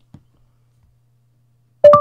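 Google Home smart speaker's short listening chime, sounding once near the end as its top is touched: the assistant is now listening for a command. Before it, near silence apart from a faint click.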